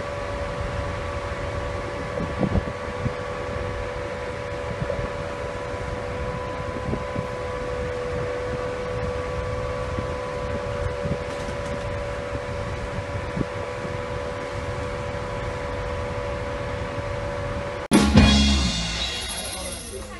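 Steady machinery hum of a ship at sea, two even tones over a low rumble. About 18 seconds in it cuts abruptly to a live band playing with drums.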